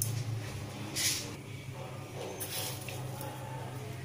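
Mustard seeds sizzling in hot sesame oil in an aluminium kadai, heard as short spells of hiss over a low steady hum.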